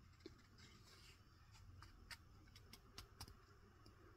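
Near silence: quiet room tone with a few faint ticks from a micarta fountain pen being handled and its cap threaded on.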